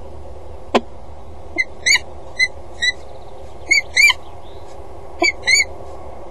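Peregrine falcon giving a series of short, arched call notes, some in quick pairs, with one sharp click about a second in, over a steady low hum.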